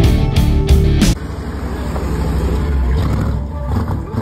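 Rock music with a heavy beat cuts off suddenly about a second in, giving way to a truck engine running with a steady low rumble.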